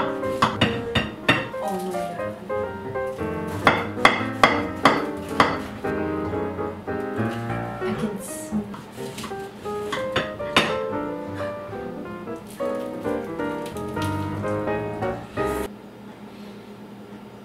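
Background music: a quick melody of short, sharp notes over a beat, which stops abruptly just before the end.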